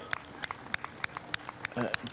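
A quick, irregular run of short, sharp clicks, about five or six a second, over a faint steady background hum.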